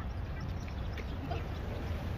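A duck quacking faintly a few times around the middle, over a steady low rumble.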